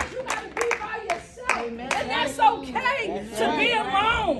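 A small audience clapping in quick, scattered claps for about the first second. Then voices call out with rising and falling pitch, a few claps still mixed in.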